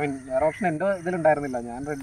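A man speaking, continuous talk with no other sound standing out.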